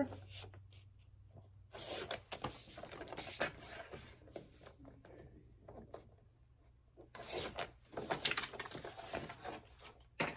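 Sliding paper trimmer's cutting head drawn along its rail through a sheet of sublimation paper, in two passes: one about two seconds in and a longer one from about seven seconds. There is quieter paper handling between the passes.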